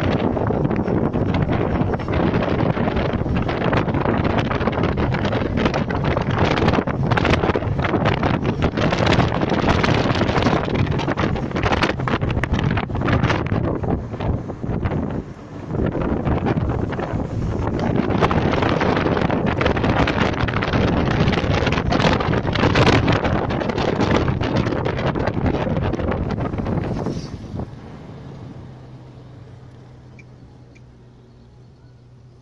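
Wind rushing over the microphone together with road noise from a moving car, rising and falling in gusts. Near the end it dies away as the car slows in traffic, leaving a low steady engine hum.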